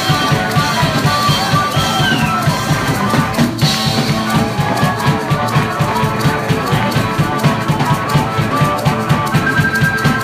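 Live blues-rock band playing an instrumental passage with no singing: amplified harmonica over electric guitar and a steady, driving drum-kit beat.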